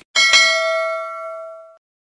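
Notification-bell sound effect: a bright metallic ding struck twice in quick succession, ringing with several overtones and fading away, then cutting off at about a second and three-quarters.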